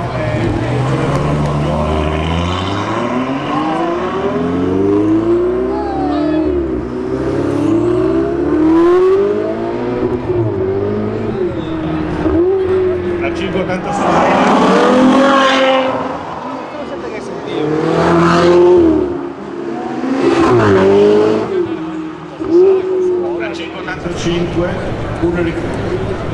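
Ferrari sports cars accelerating hard away one after another. Each engine's pitch climbs and then drops back at the gear changes. The loudest passes come a little past halfway and again a few seconds later.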